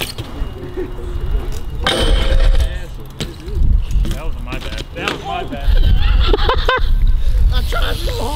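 Voices calling out over a steady low rumble, with BMX bikes rolling on concrete.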